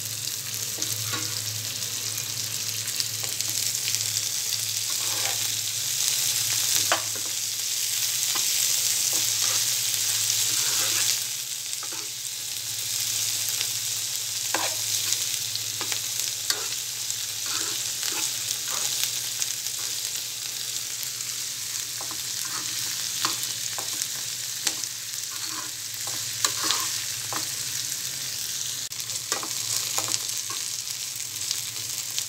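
Cut cluster beans stir-frying in hot oil in a nonstick pan: a steady sizzle, louder for a few seconds near the middle, with a spatula stirring and clicking against the pan now and then.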